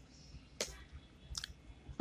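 A few faint, sharp computer keyboard keystrokes, spaced irregularly, with a close pair near the middle.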